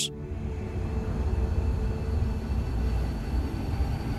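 Sci-fi spaceship hyperspace-jump sound effect: a steady low rumble, like a big engine running.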